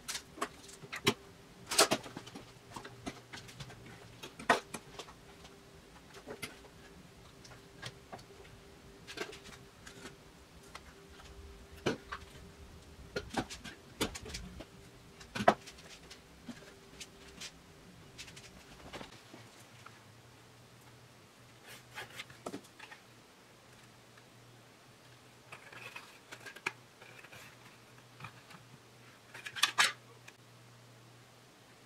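Metal locking C-clamps being opened, set and snapped shut on a wooden clamping caul during a glue-up, a series of sharp metallic clicks and clacks, most of them in the first half and sparser later. A faint steady hum runs underneath and stops about two-thirds of the way through.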